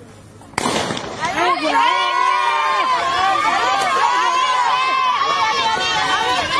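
A starting pistol cracks sharply about half a second in, sending off a youth sprint race, and is followed by loud, high-pitched voices shouting and cheering on the runners.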